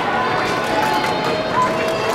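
Arena crowd chatter: many spectators' voices overlapping in a steady hubbub, with some held calls rising above it.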